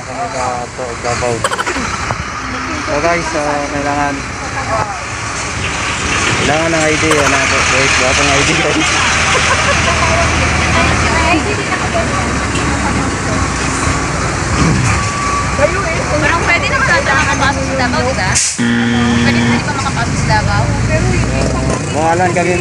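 Indistinct talking over the noise of a motor vehicle running close by on the road, the engine noise building about six seconds in and staying loud until it breaks off suddenly near the end.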